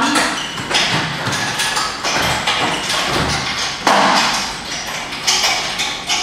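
Pilates reformer boxes and fittings being turned and set down on the reformers: a series of knocks and thumps, the loudest about four seconds in.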